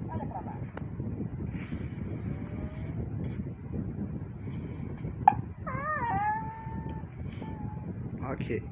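A homemade cartoon's soundtrack playing from a laptop's speakers: faint voice sounds over a low hum, a sharp click a little past five seconds, then a high, wavering voice-like cry held for about two seconds.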